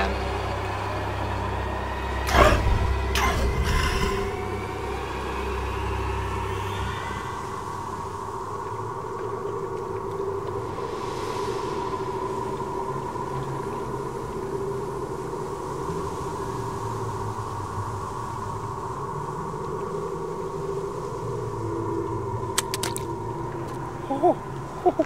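Ominous sustained drone from a film score, with steady held tones over a deep rumble that fades out about seven seconds in. Two or three sweeping hits come a couple of seconds in.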